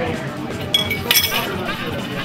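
A few sharp glass clinks, the first about three-quarters of a second in and a louder cluster just after a second, each with a brief ring.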